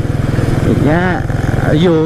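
Motorcycle engine running steadily at cruising speed, heard from the rider's seat as a continuous low hum of rapid firing pulses, with short spoken words over it.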